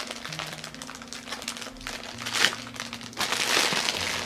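Plastic wrapping crinkling as wax melt samples are handled and unwrapped, with a short rustle about halfway through and a longer, louder one near the end. Faint low notes that shift in pitch sound underneath.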